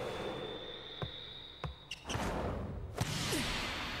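Sound effects from an animated volleyball match: a held high tone, several sharp knocks of the volleyball, then a rushing whoosh from about halfway as the ball is served and flies.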